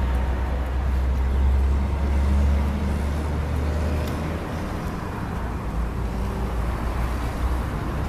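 Steady low rumble of road traffic, with engine hum from passing vehicles, easing slightly about halfway through.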